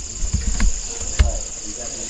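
Crickets trilling steadily in a continuous high note, with a few soft low knocks, the sharpest about a second in.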